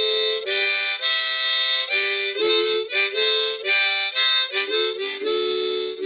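Harmonica cupped in both hands, playing a tune of held notes and two-note chords that change about every half second, with a quicker run of short notes near the end.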